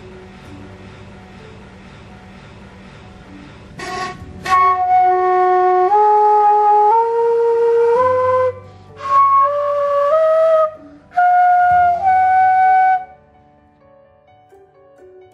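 A recorder playing an ascending scale of about eight clean, steady notes, each held about a second, with a short break in the middle. The notes are played one at a time so a phone's spectrum analyser can read the peak frequency of each fundamental.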